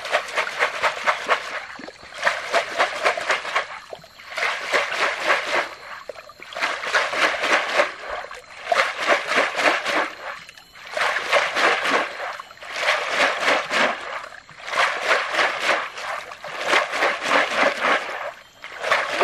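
Stream gravel being washed in a wire-mesh basket sieve shaken in shallow creek water while sieving for gold: repeated rounds of rapid splashing and sloshing, each about a second and a half long, coming roughly every two seconds with short pauses between.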